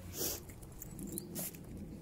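A Border terrier on a leash sniffing the ground: one short sharp sniff about a quarter second in, then quieter snuffling.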